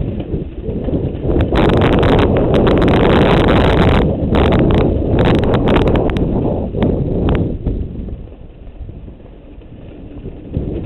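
Mountain bike riding fast down a rough dirt and rock trail, heard from a GoPro on the bike or rider: a dense rumble of tyres over dirt and stones with many clattering knocks and rattles. Loudest through the first half, easing off in the last few seconds.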